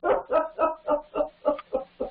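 A man laughing heartily, a quick even run of about eight short 'ha's, some four a second.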